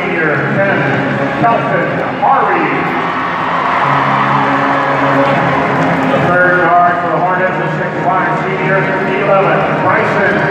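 A voice singing slow, long-held notes.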